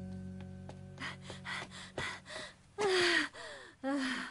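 Soft background music ends about a second in. Then a boy's voice sobs: quick breathy gasps and short falling wails, the loudest a little before three seconds in.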